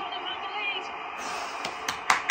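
Football match TV broadcast playing in a small room: steady stadium crowd noise under faint commentary, then a couple of sharp hand claps near the end.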